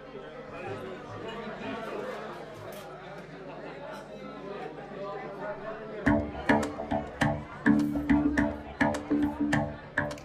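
Low chatter of voices, then about six seconds in a live band with drum kit and electric guitar comes in loudly together, playing short accented hits about three a second.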